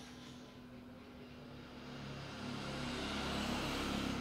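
A passing vehicle, its steady rushing noise growing louder over the last two seconds.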